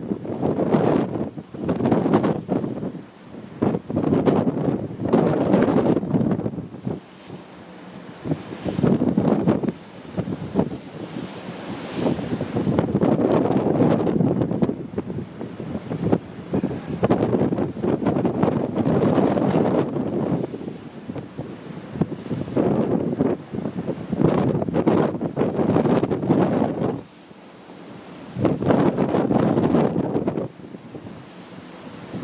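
Wind buffeting the microphone over rough open sea, with waves rushing and breaking along a ship's hull, rising and falling in surges every couple of seconds.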